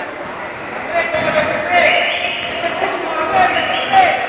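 Players' voices calling out in an echoing sports hall, with a basketball bouncing on the court floor. The voices pick up about a second in.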